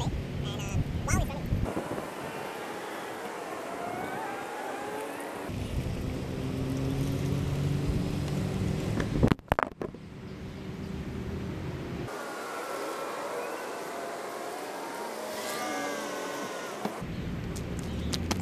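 BMW 640i's 3-litre turbocharged six-cylinder engine running and revving, the sound changing abruptly several times, with a sharp knock about nine seconds in.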